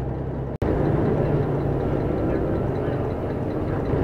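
Steady in-cabin driving noise of a car: a low engine and road hum with tyre noise, as picked up by a dashcam. It cuts out abruptly for an instant about half a second in, then carries on at much the same level.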